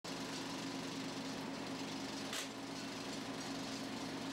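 Film projector running: a steady mechanical hum with a low drone and hiss, and one brief tick about two and a half seconds in.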